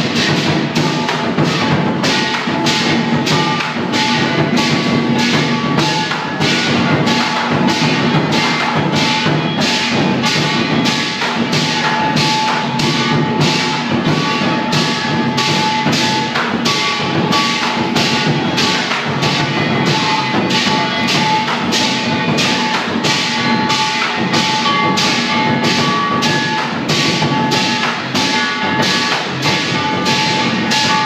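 Lion dance percussion: a large drum beating a steady rhythm with clashing cymbals and gong ringing over it.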